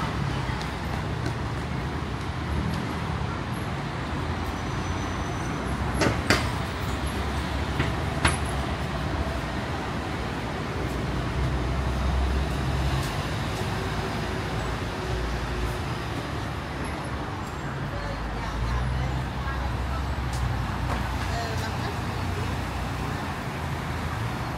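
Busy city street ambience: a steady hum of road traffic with the low rumble of passing buses and cars swelling and fading, and voices of passers-by. Two sharp clicks sound about six and eight seconds in.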